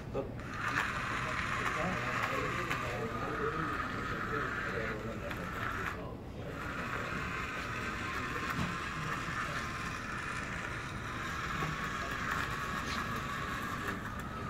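Small electric gear motors of a hobby robot car whining steadily as it drives across a hard floor, cutting out briefly about six seconds in, then running again.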